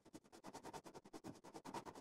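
Oil pastel rubbed lightly across paper with barely any pressure: a quick run of faint back-and-forth colouring strokes.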